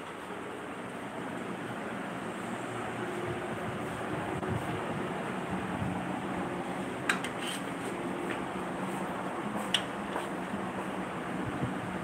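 A steady hiss, with a few sharp clicks of a metal spatula against the frying pan between about seven and ten seconds in.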